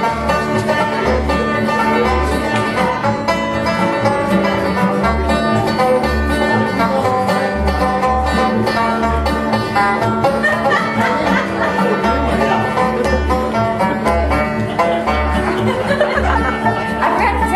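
A live bluegrass instrumental: a banjo picking quick rolls over strummed acoustic guitar, with an upright bass playing a steady bass line underneath.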